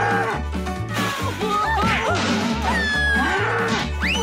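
A cartoon yak mooing and bellowing in gliding, bending calls, over background music with a pulsing bass beat.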